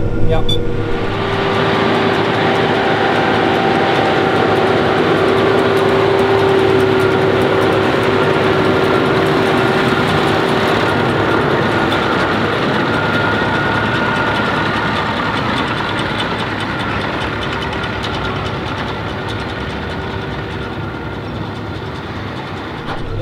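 John Deere 6R tractor pulling a three-axle Schuitemaker Rapide loader wagon whose pickup gathers grass from the swath. The machinery makes a steady, dense noise with a faint whine in it, and it slowly fades over the last several seconds as the outfit moves away.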